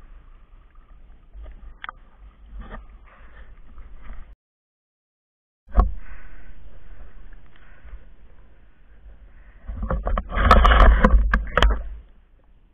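Water lapping and sloshing around a camera at a river's surface, cut by a silent gap of about a second and a half near the middle. Loud splashing near the end as a speared giant freshwater prawn is lifted out of the water.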